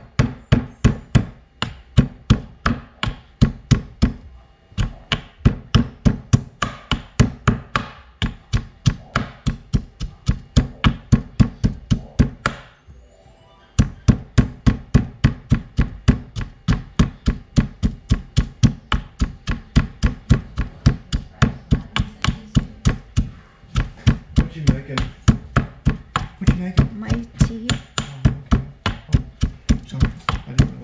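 A white marble pestle pounding fresh ginger and turmeric in a marble mortar: steady dull knocks, about three a second, with one short break about halfway through.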